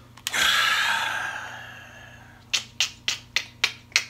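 A long breathy exhale that fades out over about two seconds, then about six sharp clicks in an even rhythm, three or four a second, like finger snapping.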